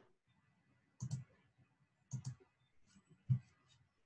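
Light clicking at a computer: a pair of clicks about a second in, another pair about two seconds in, then a few single clicks near the end.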